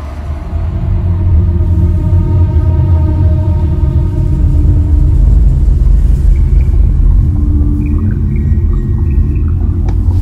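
A loud, deep, steady rumble with faint held tones above it: an ominous low drone.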